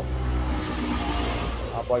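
A motor vehicle going by: a steady rushing noise over a low engine hum that fills the pause in the talk, with a man's voice returning near the end.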